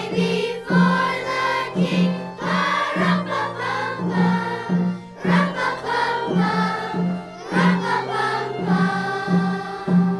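Children's choir singing a Christmas song, accompanied by a conga and hand drum beating roughly once a second.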